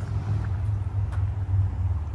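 A steady low rumble of outdoor background noise, with a couple of faint ticks.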